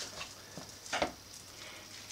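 Hands taking potato dumpling dough from a stainless-steel bowl and rolling it into a ball: faint handling sounds with a few light clicks, the loudest about a second in.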